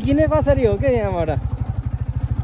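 Royal Enfield motorcycle engine running at low speed with a steady, even low beat, while a person's voice is heard over the first second and a half.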